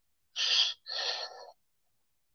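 A person's audible breaths, two in quick succession about half a second and a second in, breathy and without voice, like a sharp breath in followed by a breath out.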